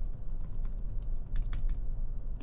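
Typing on a computer keyboard: irregular, scattered key clicks over a low steady hum.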